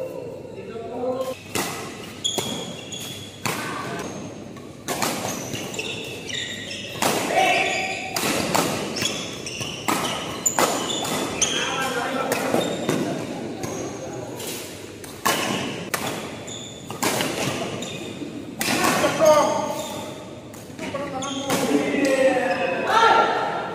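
Badminton rackets striking a shuttlecock in quick rallies, a run of sharp, irregularly spaced cracks that echo in a large hall. Short high squeaks of court shoes are heard between the hits, along with players' voices.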